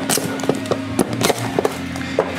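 A cardboard microphone box being opened by hand: a quick scatter of sharp clicks and taps as the lid and packaging are handled.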